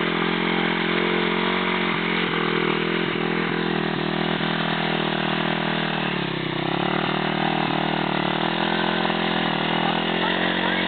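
Motorbike engine running steadily at fairly high revs, briefly dropping in speed about six and a half seconds in and picking back up.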